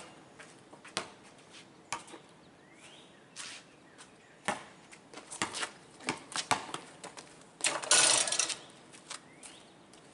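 Basketball dribbled on a concrete driveway: scattered sharp, irregularly spaced bounces, with faint sneaker squeaks. Near the end comes a louder noisy rush about a second long.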